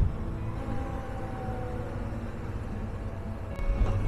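Honda Transalp 650 V-twin motorcycle running at a steady cruise, its low engine rumble mixed with wind rush on the bike-mounted camera's microphone.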